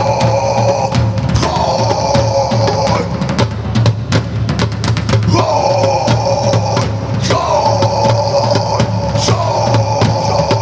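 Live rock band playing: a drum kit and a hand-played djembe beat out a steady rhythm under a held melodic line that comes in phrases of a second or two.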